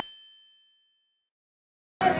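A single bright, bell-like ding, an edited sound effect, struck once just as the concert sound cuts out and ringing away over about a second.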